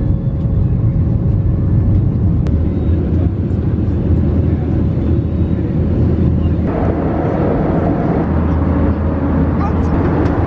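Steady jet airliner cabin noise, a loud low rumble from the engines and airflow, heard from inside the cabin. From about seven seconds in it turns brighter and hissier.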